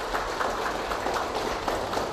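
An audience applauding: many hands clapping steadily.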